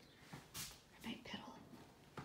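A few faint whispered or murmured words, with a short hiss about half a second in.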